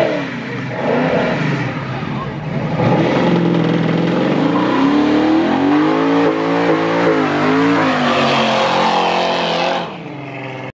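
First-generation Mercury Cougar's V8 revving hard. The pitch climbs from about three seconds in, then rises and falls at high revs.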